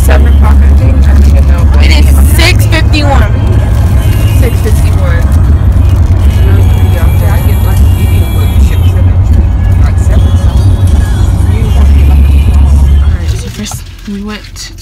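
Loud, heavy low rumble of a car driving on the road, heard from inside the cabin, with music and voices over it. The rumble drops away abruptly near the end.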